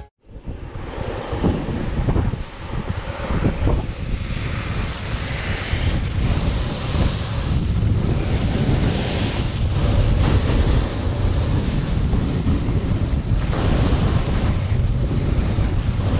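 Wind buffeting the GoPro Hero7 Black's microphone while skiing downhill at speed, a steady rushing noise with low gusty rumble, together with the hiss of skis running over the snow.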